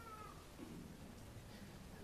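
Near silence: faint room tone, with a faint, brief high gliding sound near the start.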